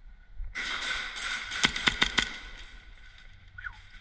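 A rapid burst of airsoft gunfire lasting under two seconds, with several louder sharp cracks in its second half.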